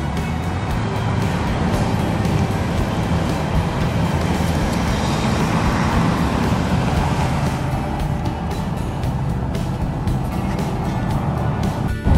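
Low steady car engine and road rumble heard from inside the car, with music playing throughout; another vehicle swells up and fades about halfway through.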